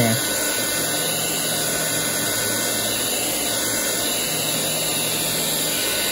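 Small handheld heat gun running steadily: a constant rush of blown air with a faint low fan hum.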